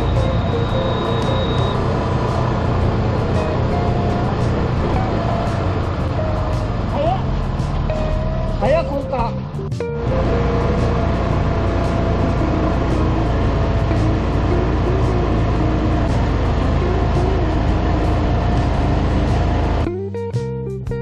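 Engine of a Mitsubishi LKV6 paper-mulch rice transplanter running steadily, heard from the driver's seat on the machine, with a brief break about halfway through before the steady drone resumes.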